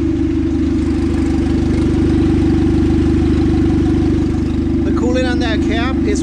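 Turbo Honda Civic's D16 four-cylinder engine idling steadily while its cooling system is burped through a funnel on the radiator after a fresh coolant and thermostat change.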